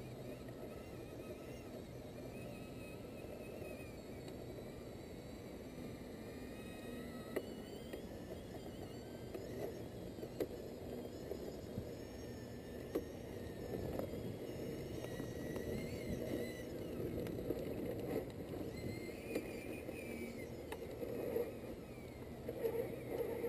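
Radio-controlled scale crawler truck climbing a steep dirt bank: a steady whir from its electric motor and drivetrain as the tyres claw at loose soil, with a few sharp clicks and knocks. It grows louder over the second half as the truck nears the top.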